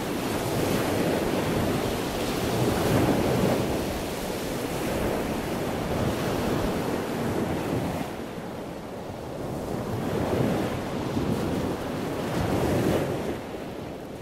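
Sea surf washing onto a beach, swelling and falling back every few seconds.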